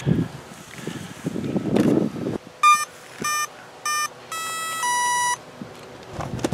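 Electronic speed controller start-up tones played through the brushless motor as the flight battery is connected: three short beeps, then two longer tones, the first higher and the second lower, signalling the controller has powered up and armed. Before them come a couple of seconds of rustling handling noise.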